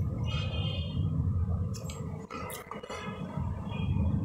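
Cardboard safety matchboxes being handled and pushed together: faint scraping and a few soft taps over a steady low hum.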